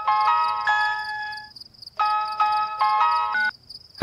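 Mobile phone ringtone: a short bright chiming melody, played twice, the second time starting about two seconds in. A steady high cricket chirr runs underneath.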